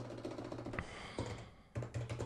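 Typing on a computer keyboard: a quick run of key clicks with a short pause near the end.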